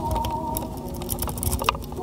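A city rake pick scraping in and out of the pin-tumbler cylinder of a Master Lock Titanium Series steering wheel lock under tension: a quick irregular run of small metallic clicks and ticks as the pins are raked.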